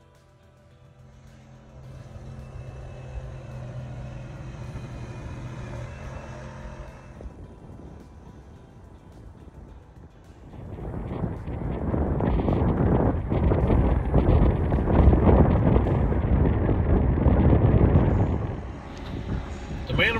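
Steady low tones, the tail of background music, fade out over the first several seconds. From about ten seconds in, a loud, rough rushing noise takes over for about eight seconds: wind buffeting the microphone over choppy water, with waves washing against a rock seawall.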